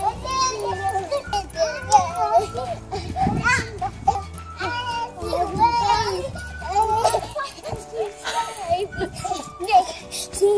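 Young girls' voices, shouting and chattering as they play, over background pop music with a steady bass line that drops out about seven seconds in.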